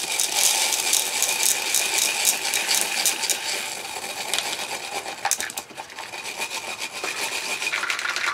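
Lead shot pellets pouring from a small box into a plastic cup of thinned binder, a dense rattling stream of tiny clicks that thins out about five seconds in, with a few last pellets dropping after.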